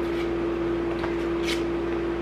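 A microwave oven running with a steady hum while it melts butter.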